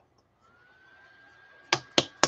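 Wooden ruler slapped against a hand twice, two sharp smacks about a third of a second apart near the end.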